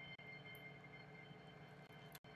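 Near silence: room tone with a faint steady high whine.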